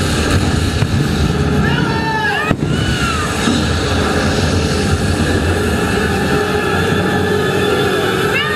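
Jet ski engines running across the water amid loud stunt-show sound with amplified voices. A sharp bang comes about two and a half seconds in as a pyrotechnic fireball goes up.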